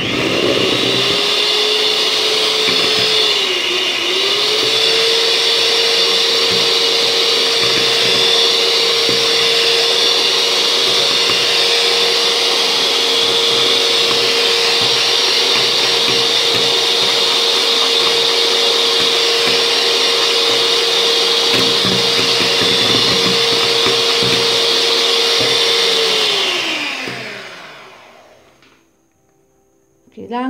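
Electric hand mixer whipping all-purpose cream in a stainless steel bowl, its motor running with a steady whine. The pitch dips briefly about four seconds in, then the mixer winds down and stops near the end.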